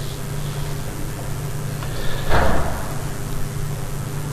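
Steady low background hum of the recording, with one brief soft noise about two seconds in.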